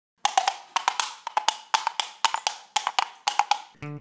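Wood block struck in a quick, uneven rhythm, about five or six sharp knocks a second, starting a quarter second in and stopping just before the end: a percussion interlude covering a scene change in the play.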